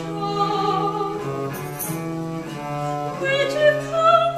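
Early-17th-century English lute song played by a period consort of baroque violins, viola da gamba and lute, in a mostly instrumental passage of steady held notes. A soprano voice comes back in about three seconds in.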